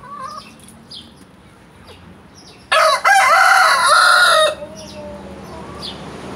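Ataks rooster crowing once, loud, from a little before halfway through for just under two seconds, after a short first note. Before it, hens cluck softly.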